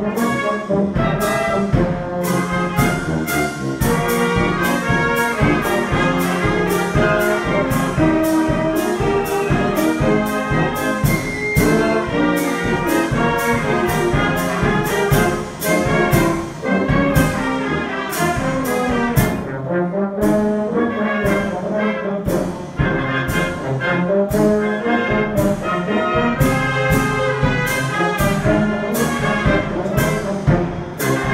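Brass band playing: tubas, trumpets and other horns sounding together over a steady beat.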